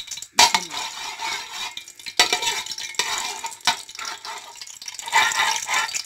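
Green cardamom pods frying in hot ghee in a stainless steel pot, stirred with a metal perforated skimmer that scrapes the pot. Three or so sharp knocks of the metal spoon against the pot stand out, the first near the start, one about two seconds in and one nearer four seconds.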